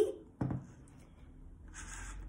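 A single light knock on the tabletop about half a second in, with a quick decay, followed by a soft breath near the end.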